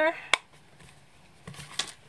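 Plastic stamp ink pad case being handled on a craft table: one sharp click about a third of a second in, then softer knocks and rustling near the end as the pad is moved.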